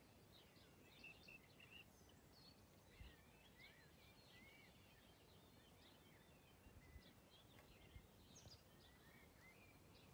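Near silence outdoors, with faint, distant birds chirping in short calls throughout.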